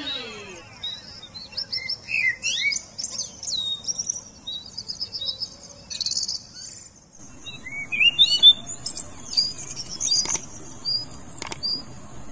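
Recorded birdsong: several birds chirping in short, quick calls that rise and fall in pitch, with the background changing about seven seconds in as a new stretch of birdsong begins.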